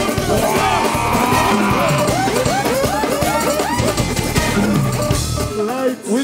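Live bouyon band music with pounding drums and heavy bass under a sung or synth melody of rising and falling phrases. The bass drops out suddenly about five and a half seconds in, as the song ends.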